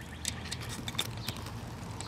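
Faint, scattered light clicks of a metal spade connector and wires being handled and pushed onto a run capacitor terminal, over a low steady hum.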